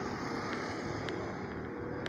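Steady street traffic noise, a vehicle running along the road, with a couple of faint clicks.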